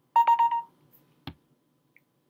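A short electronic beep of about four rapid pulses, followed a little over a second later by a single sharp click.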